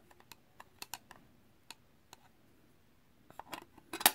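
Scattered light clicks and taps of a clear hard-plastic card case being handled and shut around a trading card, with a quick cluster of clicks near the end.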